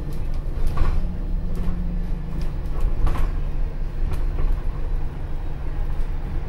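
Cabin noise aboard an Alexander Dennis Enviro400H hybrid double-decker bus on the move: a steady low drone, broken by several short, sharp clicks and knocks spaced about a second apart.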